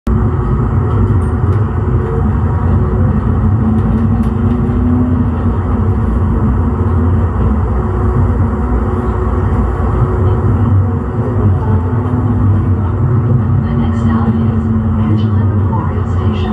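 Siemens S200 light rail vehicle running: a steady low rumble with an electric hum of a few steady tones that swells a couple of times.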